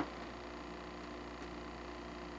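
Faint steady hum with a thin layer of hiss, holding several low steady tones and no distinct events.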